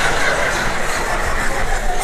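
Theatre audience laughing and clapping, a steady wash of crowd noise.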